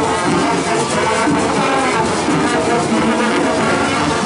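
Marching band playing a tune in the street: horns holding notes over a steady drum beat.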